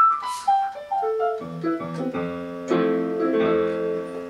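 Kurzweil SP76 digital stage piano played: a quick run of single notes stepping down in pitch, then sustained chords from about halfway.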